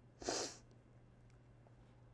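A single short, sharp burst of breath from a person, about a quarter second in and lasting about a third of a second, then faint room tone.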